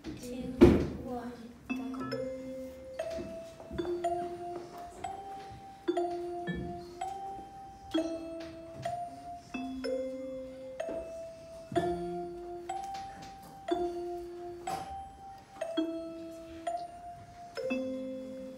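Small electronic keyboard played by three players at once, a gamelan piece in three parts: a repeating pattern of struck, held notes, a higher line over a lower one, stepping between a few pitches. A loud thump comes about half a second in.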